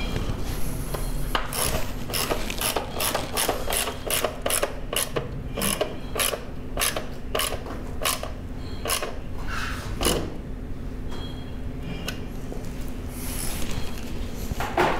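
Socket ratchet wrench clicking in a steady run of quick strokes, about three clicks a second, as it tightens the seat-mounting bolt down onto the frame. The clicking stops about ten seconds in.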